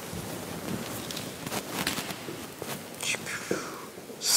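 Faint handling and rustling noises with a few quiet clicks, and a low whispered voice, with a brief hiss about three seconds in.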